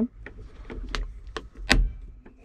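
Several sharp plastic clicks, the loudest near the end, from the new interior dome lamp's lens cap being snapped into place and its switch being moved.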